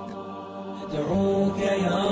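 Intro music with a voice chanting in long held notes, louder from about a second in.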